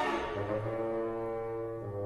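Orchestral film music: a cymbal crash dies away, then about half a second in the orchestra holds a sustained chord over a low bass note.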